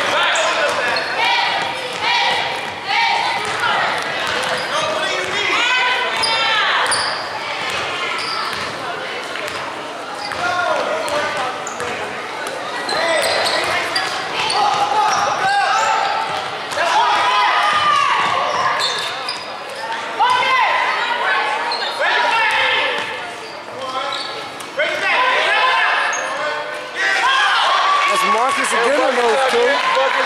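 Basketball game play on a hardwood gym floor: a basketball bouncing in repeated knocks, sneakers squeaking in short high glides, and players' voices, all echoing in the hall.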